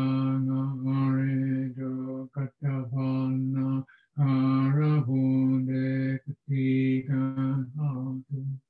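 A Buddhist monk chanting devotional verses in Pali, in a low male voice held almost on one note, in long phrases broken by short pauses for breath.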